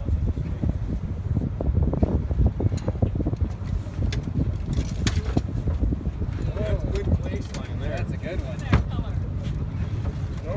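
Steady low rumble on a boat's deck, with scattered knocks and clanks of sampling gear being handled and faint voices in the background.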